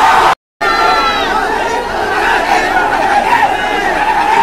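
Large crowd shouting and chattering all at once, many voices overlapping. There is a brief cut to silence about half a second in.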